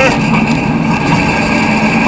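Roller coaster train climbing a vertical chain lift hill, the lift running with a steady mechanical drone heard from the onboard camera.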